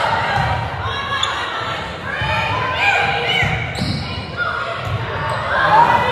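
Volleyball rally on a hardwood gym court: repeated thuds from the ball and players' feet, short squeaks, and players' voices calling out, all echoing in a large hall.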